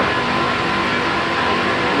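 Steady mechanical hum and hiss with a constant mid-pitched tone, unchanging throughout.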